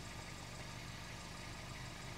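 Faint, steady low hum of a car engine idling, heard from inside the cabin.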